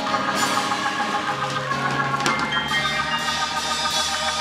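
Church band music: sustained chords and a low bass line over light drums and percussion.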